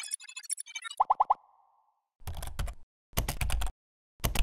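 Animated logo sting made of sound effects. A glittering, high-pitched chime run comes first. About a second in there are four quick springy blips with a short ring, followed by two short, bass-heavy noise bursts.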